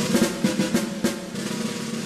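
Background music: a rapid snare drum roll over a steady low held note.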